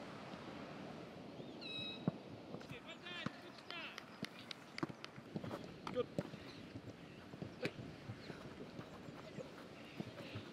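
Footballs being struck and caught by goalkeepers: a few scattered sharp thuds, with birds chirping in the background.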